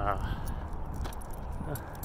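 Light, irregular clicks and jingling from a person walking on a sidewalk, over a steady low rumble.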